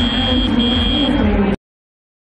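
A high, steady electronic buzzer tone sounds twice in quick succession over arena crowd noise. It is the match field's signal for the end of the autonomous period. The sound then cuts off abruptly.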